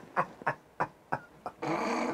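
A man laughing hard, the laugh trailing off into short fading breathy bursts, then a long breathy gasp near the end.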